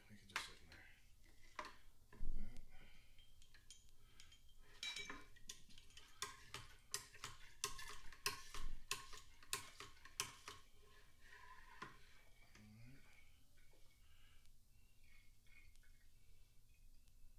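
Clinks and taps of home-brew bottling gear (racking cane, tubing and bottle filler) knocking against glass wine bottles and a plastic bucket, coming thick and fast in the middle, with a dull thump about two seconds in.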